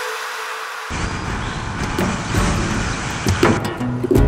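Onboard sound of a small motorcycle of up to 125 cc being ridden: wind rushing over the camera microphone with the engine underneath. The sound is thin and high at first and comes in full about a second in.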